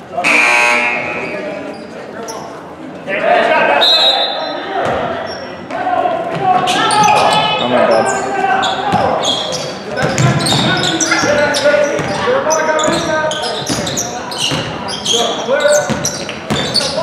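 Basketball dribbling and bouncing on a hardwood gym floor, with sneakers squeaking and spectators talking in a large, echoing gym. A buzzer sounds briefly at the very start.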